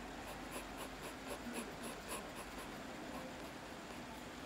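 Graphite pencil scratching on sketchpad paper in short, quick repeated strokes, about four a second, as lines are shaded in.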